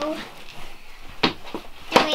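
Fabric baseball caps being handled and stacked by hand on a table: low rustling with two short sharp knocks, one a little past a second in and one near the end.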